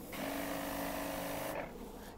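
Weed sprayer spraying in one burst of about a second and a half: a small pump motor hums steadily under the hiss of the nozzle, then stops shortly before the end.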